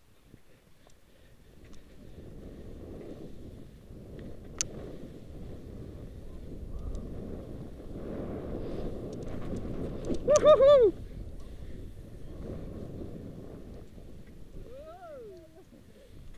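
Skis running downhill through snow, with wind rushing over a helmet camera's microphone: a steady low rush that builds as speed picks up. About ten seconds in, one short, loud whoop from a skier.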